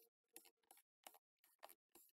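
Faint, unevenly spaced light clicks, about a dozen, as small screws are undone from a laptop's metal bottom cover with a small screwdriver.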